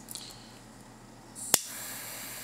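Micro Blazer butane micro torch being lit: about a second and a half in, the gas starts hissing, the piezo igniter gives one sharp click, and the blue jet flame then hisses steadily.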